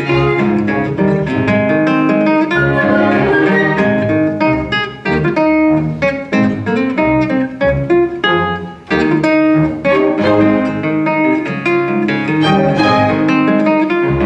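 Classical guitar played fingerstyle as a concerto soloist, a quick run of plucked notes, with orchestral bowed strings accompanying. The music dips briefly between phrases around the middle.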